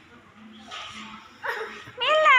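Faint children's voices and chatter in an indoor play area, with a short child's vocal sound about one and a half seconds in.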